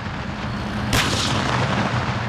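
A tank's main gun firing once about a second in: a sharp report followed by a long, rolling echo, over a steady low rumble.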